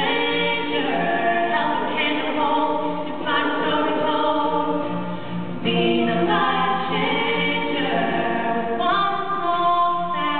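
Two female voices singing a slow song together in harmony, with long held notes, over acoustic guitar.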